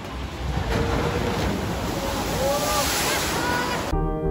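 A water-ride boat rushing down a flume chute and splashing into the pool: a steady rush of water that builds towards the end, with faint voices over it. It cuts off suddenly near the end.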